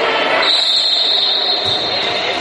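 Referee's whistle: one long steady blast starting about half a second in and lasting about a second and a half, over steady background noise.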